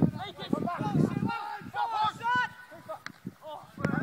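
Shouting voices of footballers and onlookers during play on an open grass pitch, with a few short sharp knocks near the end.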